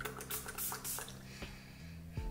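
A pump-spray bottle of hair and body fragrance mist spritzed a few times in quick short hisses within the first second.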